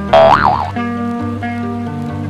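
Background pop music with steady held notes. Just after the start, a springy boing-like transition sound effect swoops up and down in pitch for about half a second and is the loudest sound.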